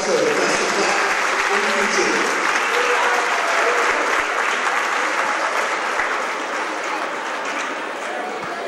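Crowd in a gymnasium applauding, steady clapping that eases off a little toward the end.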